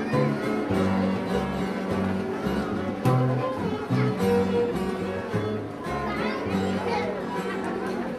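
A live string band playing a dance tune: guitars with a stepping bass line. Voices are heard underneath.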